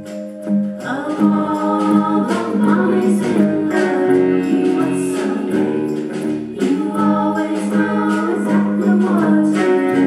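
Several voices singing a gospel-style song, holding long notes.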